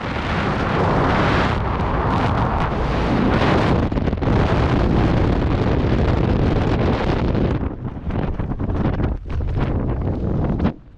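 Loud rush of freefall wind buffeting the camera's microphone during a tandem skydive, carried on through the parachute opening. It breaks up into uneven gusts in the last couple of seconds as the fall slows under canopy.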